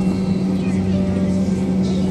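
Steady airliner cabin noise while the jet taxis after landing: a constant low drone from the engines, with a faint hiss of cabin air.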